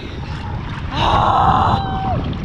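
A woman's breathy, high-pitched gasping cry about a second in, trailing off downward: a reaction to the shock of cold sea water. Under it runs a low rush of sea water and wind on the microphone.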